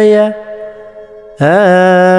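A solo voice chanting in long held notes, in the manner of Ethiopian Orthodox liturgical chant. The voice breaks off just after the start, leaving only a faint held tone, then comes back in about a second and a half in with a slight scoop in pitch.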